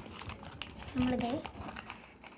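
Sheet of paper rustling and crinkling as it is handled and cut with scissors, with a run of small clicks and snips. A brief voice sounds about a second in.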